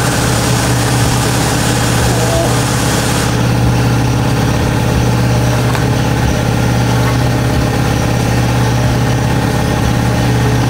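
A steady low machine drone, like an engine idling, holding one pitch throughout; a faint upper hiss thins out about three seconds in.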